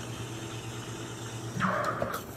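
Espresso machine humming steadily as a shot is pulled into the cup. A short, louder hiss comes near the end.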